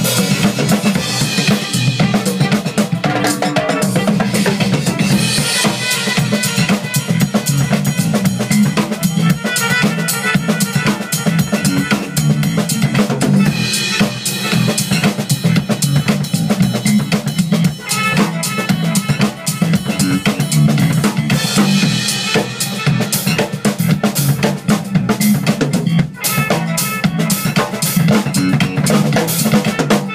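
A large drum kit played continuously in an old-school funk groove, with bass drum, snare rimshots and cymbals, over a retro funk backing track.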